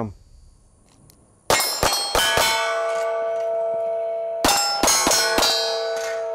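Pistol shots striking steel targets, each hit ringing out as a clang: a quick string of about five shots starting about a second and a half in, then about four more near the end, the steel ringing on between them.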